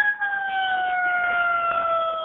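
Emergency vehicle siren heard over a telephone line: one long tone falling slowly in pitch.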